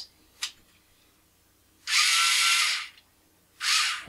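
The small geared DC motors of a 2WD robot car chassis whir as the wheels spin freely in the air under an Arduino sketch. A click comes first, then a run of about a second, a pause, and a shorter run near the end.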